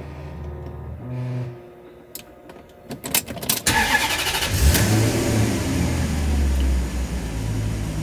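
Maserati Quattroporte 4.2 V8 started for the first time after an oil change: a short low hum and a few clicks with the ignition on, then about three and a half seconds in the engine cranks, fires, flares briefly and settles to a steady idle as oil pressure comes up and the oil warning light goes out.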